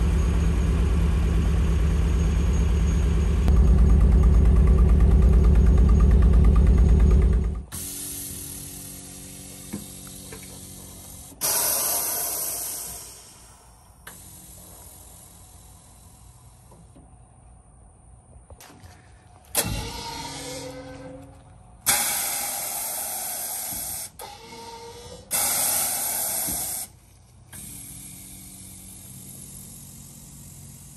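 Bagged Nissan D21 Hardbody pickup's engine running, louder for its last few seconds, then shut off. This is followed by four short hissing bursts from the air-ride suspension valves as the air bags are vented, some starting with a click.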